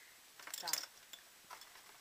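A few light clicks and taps of a plastic electric toothbrush and its plastic packaging being handled and set down on a table, around one short spoken word.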